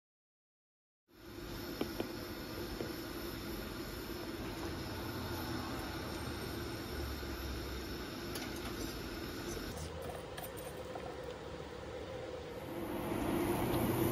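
Steady kitchen background hiss with a low hum, starting after about a second of silence, with a few faint clicks, growing a little louder near the end.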